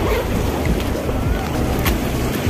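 Wind blowing on the microphone over the wash of sea waves against rocks, with a single sharp click near the end.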